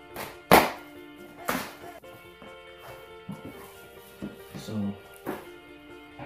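Background music with a few sharp thunks from a shipping package being handled and opened, the loudest about half a second in, another a second later and one more near the end.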